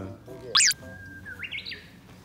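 A bird calling: one loud, sharp, high chirp about half a second in, followed by a thinner held whistle and a short wavering series of rising notes.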